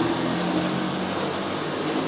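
A steady low mechanical hum in the background, with no speech.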